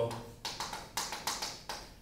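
Chalk writing on a chalkboard: a quick series of short, sharp chalk strokes and taps, about four across two seconds.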